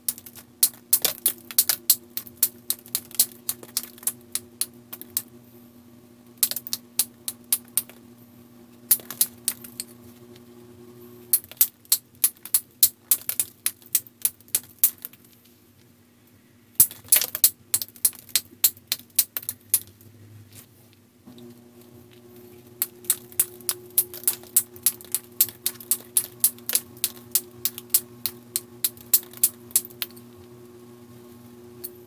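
A copper-tipped knapping tool worked against the edge of a piece of Keokuk chert: runs of sharp clicks, several a second, with short pauses between them, as weak areas and high points are taken off the stone. A low steady hum lies underneath and drops out midway.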